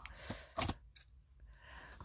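Handling noise: a short sharp click about half a second in, then a fainter tick about a second in, over quiet room tone.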